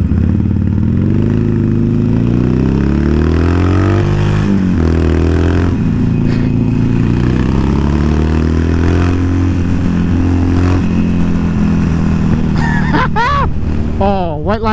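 Harley-Davidson V-twin motorcycle engine accelerating through the gears from the rider's seat, its pitch climbing and dropping back at each upshift, with wind rushing past.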